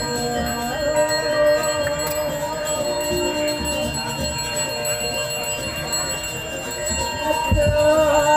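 A hand bell rung continuously with a steady ringing, with chanted singing over it. A brief low bump comes near the end.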